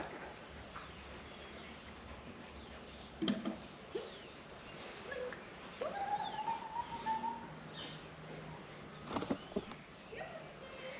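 Outdoor ambience with birds calling faintly and intermittently: short chirps, and one longer call that rises and then holds for about a second and a half, about six seconds in. A single sharp knock about three seconds in.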